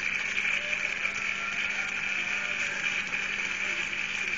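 Steady hiss with a low steady hum, and faint, indistinct sound of a television programme beneath it.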